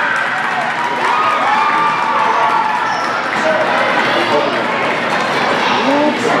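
Echoing indoor futsal game: players and spectators calling out over the general hall noise, with thuds of the ball being kicked and bounced on the court.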